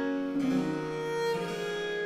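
A slow baroque cello sonata movement (Largo): a solo cello plays long sustained notes over a basso continuo accompaniment, moving to a new note about every second.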